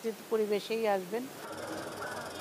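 A woman speaking for about a second. After a cut about one and a half seconds in, a steady, low background noise of an outdoor scene with no voices.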